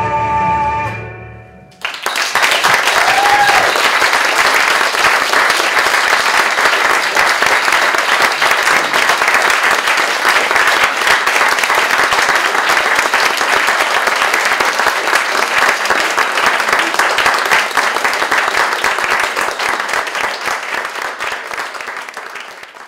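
A woman's held sung note with accompaniment fades out in the first two seconds, then audience applause breaks out suddenly and carries on dense and steady, thinning near the end.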